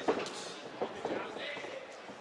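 Voices shouting around an MMA cage, with two sharp thuds from the fight, one at the very start and one just under a second in.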